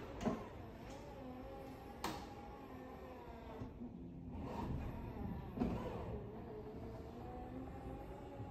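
Power liftgate of a 2017 Chevy Equinox LT driven by its electric power strut: a faint steady motor whine as the gate moves, with a click about two seconds in and a brief lull near the middle.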